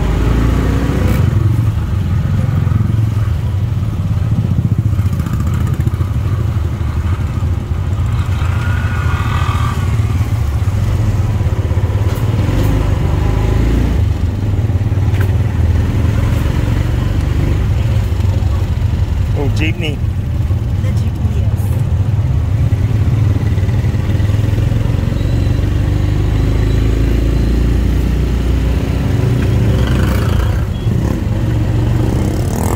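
A tuk tuk's small engine runs steadily, heard from aboard as it drives through town traffic, with other motorcycles and tricycles close by.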